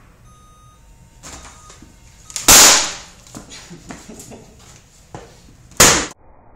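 A laptop being smashed against the edge of a desk: two loud impacts about three seconds apart, the first about two and a half seconds in, with smaller cracks and plastic clatter before and between them.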